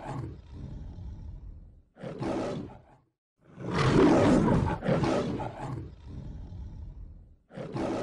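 Lion roar sound effect, played twice in a row: each time a long roar fading away, then a shorter one.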